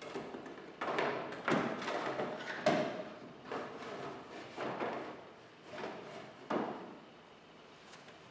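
Wooden knocks, thumps and scrapes as a person shifts about on top of a wooden dresser and handles loose drawer panels against its mirror frame and the wall. The louder knocks fall between about one and three seconds in, with one more shortly before the end.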